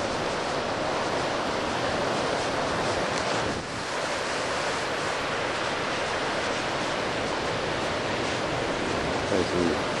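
Sea surf washing steadily over a rocky shore, with a brief lull about three and a half seconds in.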